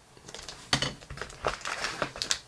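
Clear plastic bag crinkling and rustling as a bagged carbon fiber plate is handled and drawn out of a cardboard box. It starts a moment in as an irregular run of sharp crackles.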